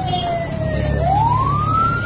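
A siren wailing: one clear tone sliding slowly down in pitch, then back up over the next second or so, over a low rumble.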